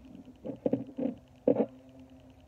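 Fingers handling a small plastic handset while pulling a lanyard cord through its loop: a few short, muffled knocks and rubs, the loudest about one and a half seconds in.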